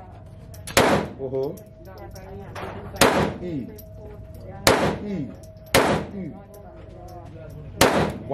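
Five semi-automatic pistol shots, fired one at a time one to two seconds apart in an indoor shooting range, each with a short echo off the range walls.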